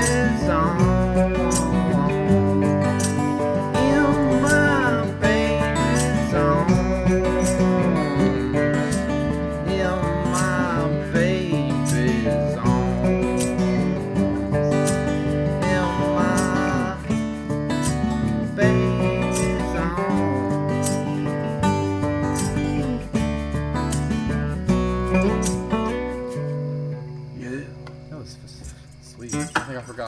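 Several acoustic guitars played together with a steady beat, an informal band run-through of a song. About 27 seconds in the playing stops and a last low chord rings out and fades.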